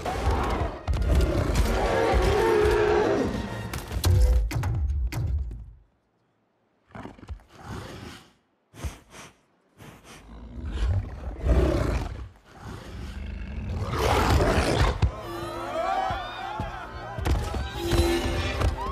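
Film action soundtrack: dramatic music mixed with a giant wolf's roars. The sound is loud for the first six seconds, drops almost to silence for a few seconds with only short bursts, then builds up loud again.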